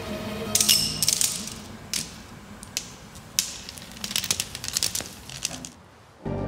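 Irregular metallic clicks and rattles from a small object handled in the hand: a quick cluster early, a few single clicks, then a busy run of rattling. Faint music runs underneath, and the sound cuts off just before the end.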